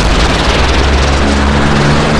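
Loud, steady engine-like rumble with a hiss, a sci-fi sound effect for a flying bus. A low steady hum joins about a second in.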